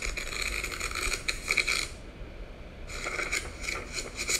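Paper pages of a book being riffled: a rustling run of pages for about two seconds, then a second, shorter run starting about three seconds in.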